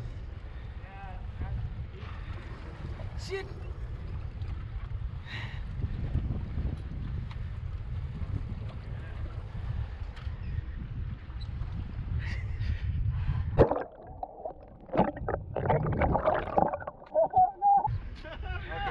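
Low, steady rumble of a boat's engine and wind on the microphone, with faint voices over it. About 14 s in the rumble cuts off abruptly and gives way to sharp knocks and louder bursts of voices.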